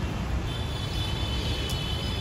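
Diesel engine of a bus idling with a steady low rumble, and a thin high-pitched whine above it from about half a second in.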